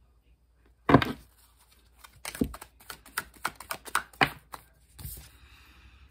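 Tarot cards being handled at a table: a single knock about a second in, then a run of quick, uneven clicks as cards are flicked through the deck, and a short papery slide near the end as a card is drawn out.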